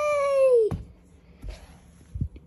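A child's high, drawn-out cat-like cry, held for about a second and then falling away, followed by a short knock and a couple of faint thumps.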